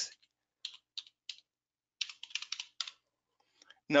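Computer keyboard keystrokes typing a word: a few separate taps early on, then a quicker run of taps around two seconds in.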